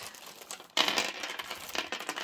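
A jumble of small costume-jewellery pieces and plastic beads clinking and rattling as they are rummaged, with a bag crinkling. It starts suddenly about a second in.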